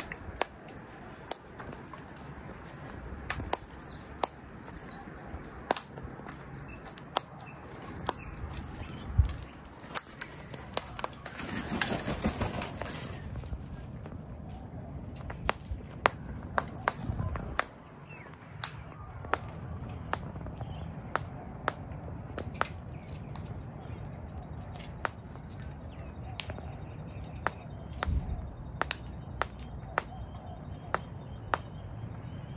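Sulphur-crested cockatoo cracking and husking seed with its beak: sharp, irregular clicks, several a second, with a brief rushing noise about twelve seconds in.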